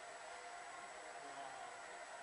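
Quiet open-air ambience: a faint, steady hiss with a faint murmur of distant voices.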